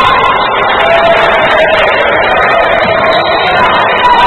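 Loud, steady crowd noise from spectators in a basketball gym during play, with a long held tone running through the middle.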